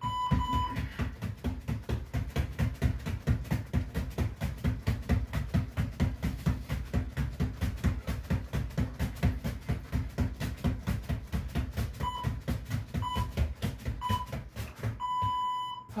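Rapid, steady thudding of feet landing on a hard floor during fast alternating low kicks, about four to five thuds a second, stopping just before the end. Short electronic beeps sound at the start, three times near the end and once more, longer, as the thudding stops.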